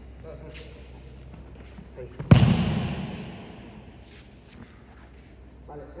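A judoka thrown with kouchi gari landing on the tatami in a breakfall: one loud slapping thud a little over two seconds in, echoing through the large hall as it dies away over about a second and a half.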